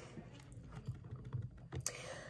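Faint, scattered light clicks and taps of a hand handling something close to the microphone, with a sharper click near the end, over low room noise.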